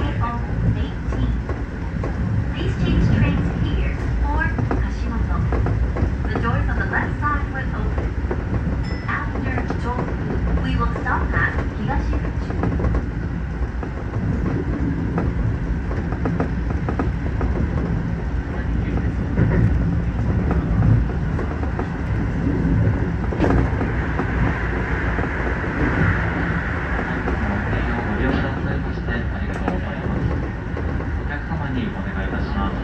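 Keio Line electric train running along the track, heard from inside the front car: a steady rumble of wheels and running gear.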